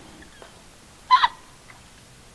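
A single short, high-pitched yelp about a second in.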